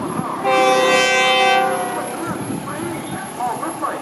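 Diesel railcar's air horn sounding one blast of a little over a second, several tones together, about half a second in.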